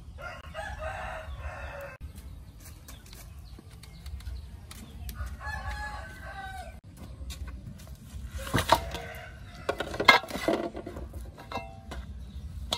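A rooster crowing twice, about five seconds apart. Near the end there are a few loud, sharp knocks and clatters.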